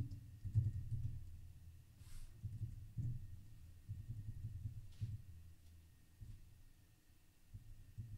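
Faint, muffled computer-keyboard typing: irregular low thumps with a few sharper clicks.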